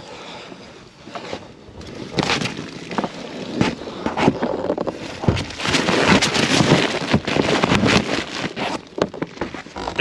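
Flexible aluminium foil ducting crinkling and rustling as it is handled and pushed out through a hole in the soffit, with many short crackles that grow louder about halfway through.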